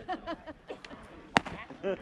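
A single sharp crack of a pitched baseball striking something about a second and a half in, loud above the chatter of players and spectators.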